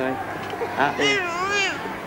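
An infant crying: a short cry, then a longer wavering wail that rises and falls in pitch, starting about a second in.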